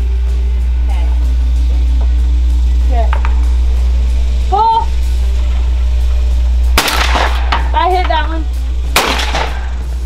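Two shotgun shots about two seconds apart, fired at a report pair of sporting clays, where the second clay is launched on the report of the first shot.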